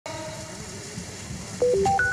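Electronic news-intro sting: faint steady tones over a low murmur, then about three-quarters of the way in a louder quick run of clean beeping tones that step down, up, and up again to a high held note.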